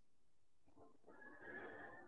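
Near silence on a video call, with a faint, muffled sound in the second half.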